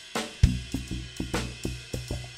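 Live instrumental rock band playing on drum kit, guitar and keyboard. A fraction of a second in, the full band comes in with a cymbal crash and a hard kick-drum hit, then keeps a steady rhythm of kick, snare and cymbals over sustained low notes.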